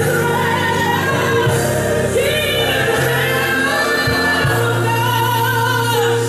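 Gospel song with singing over a steady, held bass line, playing loudly and without a break.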